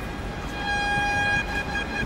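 A vehicle horn held as one long steady note for about two seconds, starting about half a second in, over a background of street noise.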